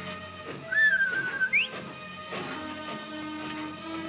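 Soft orchestral film score under a short whistle about a second in: one wavering note that ends in a quick upward slide.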